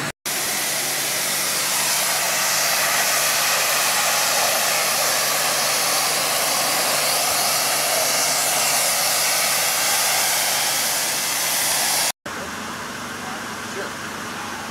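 High-pressure water jet from a pressure washer wand hissing steadily against brick. The hiss cuts off abruptly about twelve seconds in, and a quieter hiss follows.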